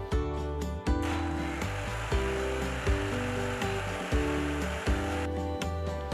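Electric mixer grinder running, grinding ginger and green chillies with water into a paste. The motor's steady noise starts about a second in and cuts off about a second before the end. Background music with a steady beat plays throughout.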